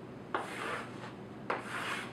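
Chalk drawn across a chalkboard in two long straight strokes about a second apart, each starting with a sharp tap as the chalk meets the board.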